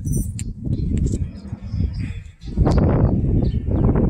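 Wind buffeting a handheld phone's microphone in an irregular low rumble, growing louder about two and a half seconds in. A bird chirps faintly near the end.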